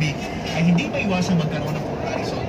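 A man's voice inside a city bus, over the steady running noise of the bus engine.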